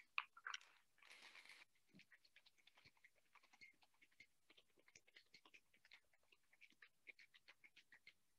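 Faint rattle of large ice cubes inside metal cocktail shaker tins being shaken hard: a fast, continuous run of small clicks that stops shortly before the end.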